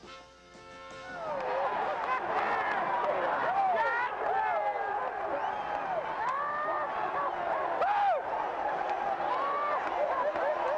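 Stadium crowd cheering, with many overlapping shouts and yells. It swells up about a second in, as a held musical chord fades out.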